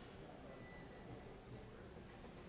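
Near silence: faint room tone with a low murmur of background noise.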